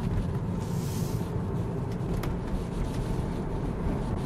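Road and tyre noise inside the cabin of a Tesla Model 3 driving at town speed, a steady low rumble with no engine sound from the electric drive. A brief hiss comes about a second in.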